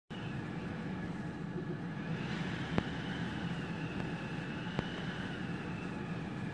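Strong wind blowing, a steady rumble on the microphone with a faint high whistle through the middle. Two sharp clicks come about two seconds apart.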